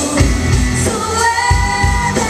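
Live indie rock band playing, with drums, bass and electric guitars under a woman singing lead; she holds one long note through the second half.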